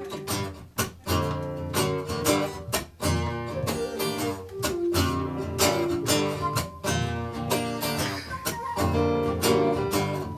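A live folk band playing an instrumental intro in the key of G: steadily strummed acoustic guitar carrying the rhythm, with flute and keyboard playing along and a few held higher notes in the second half.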